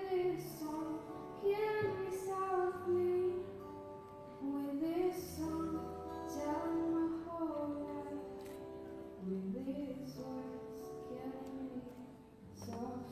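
A teenage girl's voice singing slow, drawn-out notes that glide up and down, amplified through a handheld microphone.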